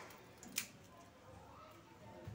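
Crisp deep-fried pakwan (fried flatbread) cracking as it is broken by hand, with a small snap at the start and a sharper crack about half a second in; the brittle snapping shows how crisp it is.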